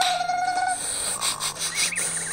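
Sound effects over a background tune, played through a screen's speaker: a held whistle-like tone that stops under a second in, then a noisy stretch with a short warbling chirp near the end.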